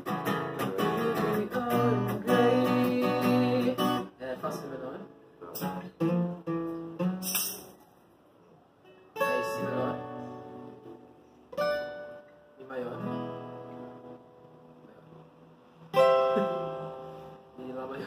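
Steel-string acoustic guitar chords being strummed as a song is worked out: steady strumming for about the first four seconds, a short break, then single chords struck and left to ring every couple of seconds.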